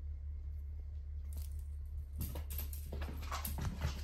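Quick pattering steps and scuffles on a hardwood floor, starting about a second in and thickest in the last two seconds, over a steady low hum.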